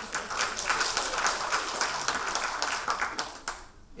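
Audience applauding, a dense patter of many hands that fades away just before the end.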